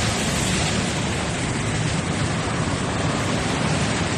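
Steady road-traffic noise: a continuous even hiss with a low rumble underneath, no single vehicle standing out.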